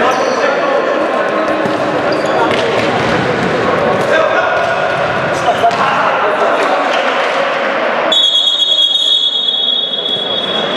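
Futsal ball kicks and bounces on a sports-hall floor amid players' shouts, echoing in the hall. About eight seconds in, a long, steady, high-pitched signal tone starts and holds.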